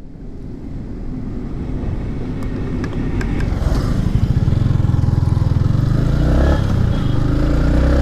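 Yamaha MT-15's 155 cc single-cylinder engine running as the motorcycle is ridden along, growing steadily louder, with its firing pulses strongest in the second half. A few faint clicks about three seconds in.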